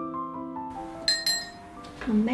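Soft background piano music, a few slow notes stepping downward and fading away. About a second in, two light ringing clinks of a ceramic mug, close together.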